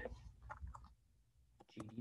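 A few faint computer keyboard keystrokes, scattered clicks as code is typed.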